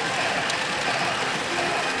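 PF Mobile Suit Gundam Unicorn pachinko machine in play: a steady, dense rattle of steel balls and machine mechanism over the parlor din, with one sharp click about half a second in.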